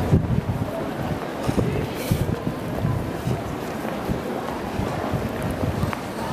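Wind buffeting the camera's microphone: an uneven, gusty low rumble.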